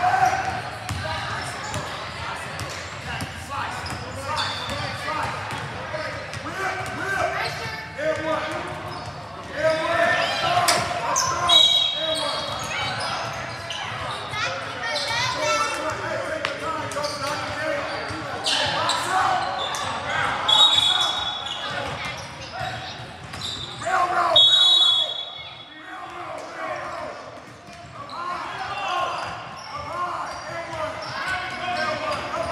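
Basketball being dribbled on a hardwood gym floor, the bounces ringing in a large echoing hall, under continual shouting and talk from players and spectators. Three short, shrill, high tones cut through it at intervals.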